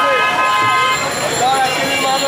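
A vehicle horn sounding one steady held note that stops about a second in, among the voices of a busy street market.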